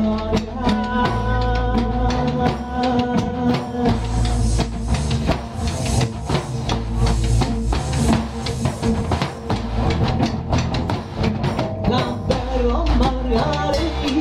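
Live folk dance music from a small band: a hurdy-gurdy holds a droning tone under its melody, with double bass notes and a steady beat on a jingled frame drum and a large rope-tensioned bass drum. A man sings into a microphone over the band.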